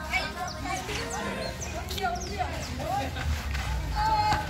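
Indistinct voices of boys calling out during a barefoot futsal game on an outdoor court, with short high chirps mixed in.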